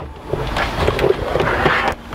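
Rustling and scraping noise as the fabric-covered parcel shelf of a Lada Granta liftback is lifted out of the boot. The noise grows louder near the end.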